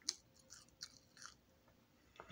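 A person biting into and chewing a french fry: one sharp click just after the start, then three shorter, softer chewing sounds about a third of a second apart.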